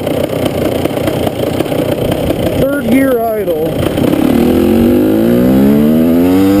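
KTM EXC two-stroke dirt bike engine running with wind noise, then accelerating, its pitch climbing steadily from about four seconds in.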